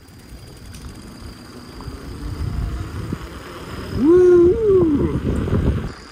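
Wind buffeting the microphone and bicycle tyres rolling on asphalt while coasting downhill, the rumble growing louder as speed builds. About four seconds in, a short high call from a rider's voice rises, holds and falls, the loudest sound here.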